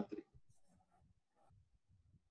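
Near silence: a man's spoken word trails off right at the start, then only faint room tone.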